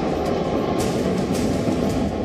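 Jet aircraft flying in formation overhead, a steady rushing engine noise, with background music mixed underneath.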